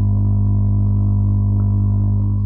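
A loud, steady low electronic hum with a few fainter overtones, coming through the video-call audio.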